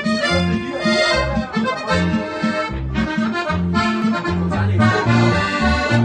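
Diatonic button accordion (Steirische Harmonika) playing a lively folk tune, its bass notes alternating in a steady, even rhythm under the melody.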